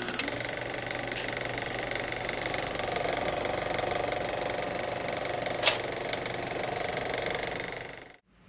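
Film-projector sound effect: a steady, rapid mechanical clatter with one sharp click a little before six seconds in, fading out at the end.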